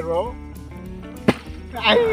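A partly water-filled plastic bottle flipped and landing on grassy ground, heard as a single sharp thud just past a second in.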